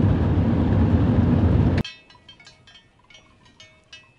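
Steady low rumble of road noise inside a moving car, cut off abruptly about two seconds in. After that comes a much quieter outdoor stillness with a few faint clinks.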